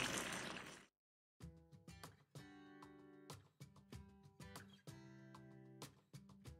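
Faint background music of plucked guitar notes, starting after a short silence about a second and a half in. In the first second the bubbling of the simmering moqueca pan fades out.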